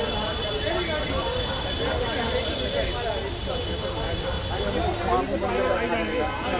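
Busy street ambience: several indistinct voices talking over a steady low rumble of traffic.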